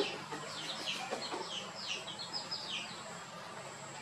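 Small birds chirping in a quick run of short, falling high notes, with a few lower calls in the first second or so.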